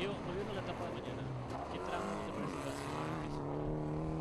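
A Mitsubishi Lancer Evolution X rally car's engine at speed on a gravel stage. Its pitch shifts through the first couple of seconds, then it settles into a steady held note from about halfway.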